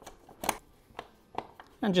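A few sharp, light clicks from a Robertson screwdriver working the clamp screws of a metal old-work box, spaced about half a second apart, with a word spoken near the end.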